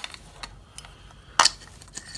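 Handling noise from a ceramic heat emitter and a plastic lamp socket: a few faint clicks, then one sharp knock about one and a half seconds in.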